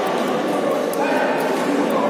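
Steady chatter of many voices echoing in a large sports hall, with a few short, high squeaks of shoes on the synthetic court floor, most distinct about a second in.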